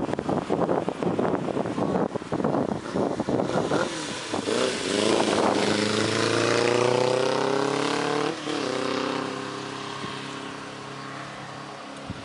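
1992 Suzuki Katana 600's inline-four engine accelerating away, rising in pitch. About eight seconds in there is a brief break and drop as it shifts up a gear, then it climbs again and fades with distance.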